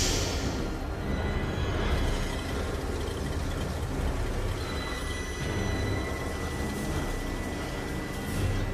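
Steady rain falling, mixed with a low, tense film score; a thin high held note comes in about five seconds in.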